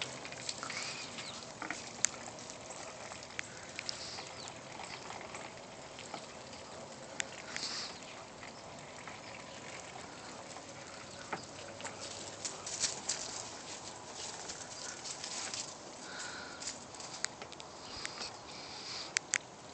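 Muscovy ducks dabbling water from a metal roof gutter: scattered soft taps and clicks on the gutter, with a run of quicker ticks about twelve to fourteen seconds in.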